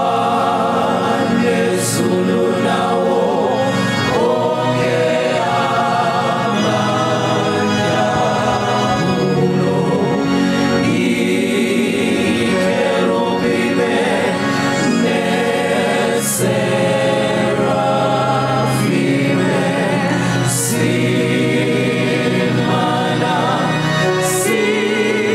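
Gospel choir singing a hymn in isiZulu in several-part harmony, with lead voices over the choir and a steady low accompaniment.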